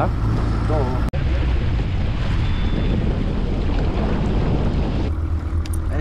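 Small outboard motor running the boat along at speed, with water rushing past the hull and wind on the microphone. About five seconds in the rushing hiss falls away, leaving a lower steady hum.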